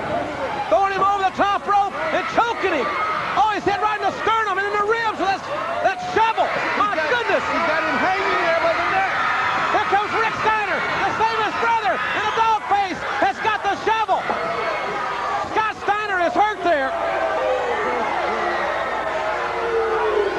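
Speech throughout: fast, excited voices calling the action, over a steady background of arena crowd noise.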